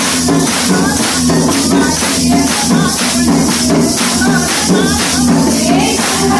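Women singing a devotional bhajan together, over handheld kartal clappers with jingles struck in a steady beat of about three strokes a second.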